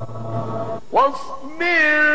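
A male Quran reciter's voice in melodic tajweed recitation. A low held note ends a little under a second in, and after a brief break the voice leaps to a high, rising and then held note.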